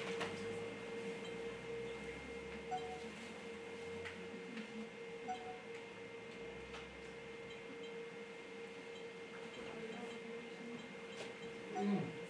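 Quiet room with a faint steady hum, and a few soft clicks and rustles from an onion being peeled by hand.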